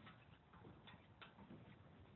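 Near silence, with a few faint, irregular clicks and taps.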